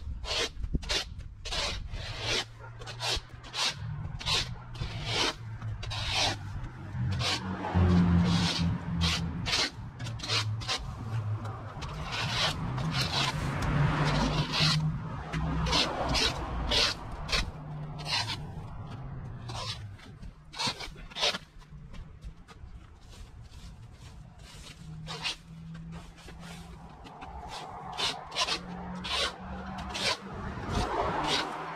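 A rake being dragged through cut grass clippings, its tines scraping over a dirt and concrete path in repeated short strokes, about one or two a second.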